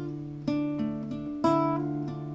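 Acoustic guitar accompaniment of a folk song with ringing chords. New chords are struck twice, about a second apart.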